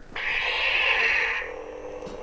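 Lightsaber ignition: a hissing rush for just over a second, then the blade's steady low hum.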